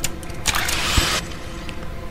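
Pneumatic tube post sound effect of a capsule being sent: a click, then a rushing whoosh of air about half a second in, lasting under a second and ending with a low thud, over a steady background music drone.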